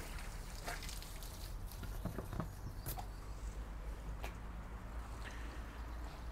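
Faint, steady splashing of water running out of the end of a pond siphon hose onto concrete, with a few scattered light clicks.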